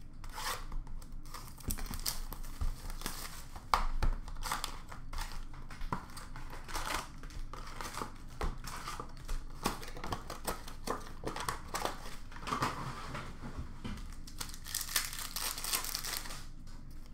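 Hockey trading-card pack wrappers being torn open and crinkled by hand, with cards slid out and shuffled. There is a run of irregular crackling with louder tears about four seconds in and again near the end.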